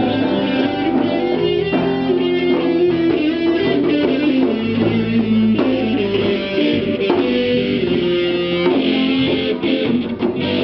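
Live rock band playing an instrumental passage, led by electric guitars, with no vocals.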